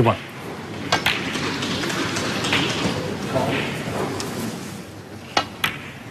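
Snooker balls clicking: a pair of sharp clicks about a second in and another pair near the end, as cue tip meets cue ball and ball meets ball. Between the two pairs, indistinct voices.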